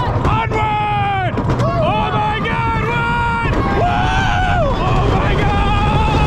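Roller coaster riders screaming in a string of long, high cries, several of which slide down in pitch at the end, over a steady low rumble of wind and the wooden coaster's train on the track.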